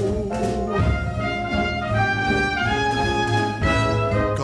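Orchestral instrumental fill between sung lines of a 1962 show-tune recording: brass playing a phrase of held notes over a steady bass.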